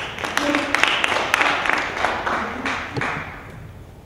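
Audience clapping, many quick claps with a few voices among them, dying away about three and a half seconds in.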